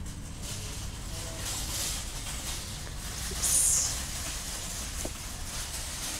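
Open-air background noise: a steady low rumble with a faint high hiss. A short, louder hiss comes a little past halfway.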